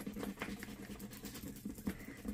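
A coin scratching the coating off a scratch-off panel on a paper savings challenge card: quick, irregular scraping strokes.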